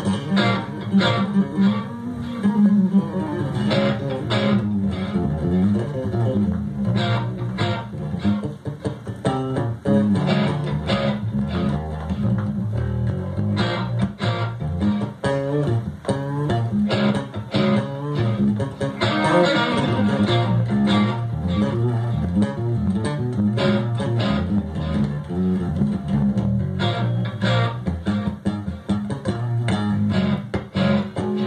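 Electric bass and electric guitar jamming together through amplifiers: a busy plucked bass line with quick runs of notes under guitar lines, played as the video's soundtrack.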